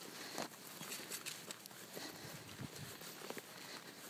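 Faint footsteps on dry grass and patchy old snow: soft, irregular crunches.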